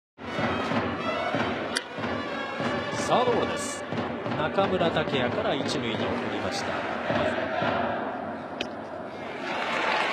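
Ballpark crowd din with an organised cheering section of drums and chanting voices, and a few sharp knocks standing out over it, the first about two seconds in.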